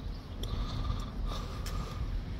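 Railway level crossing audible warning alarm sounding in repeated high tones, each under a second long, over a low steady rumble.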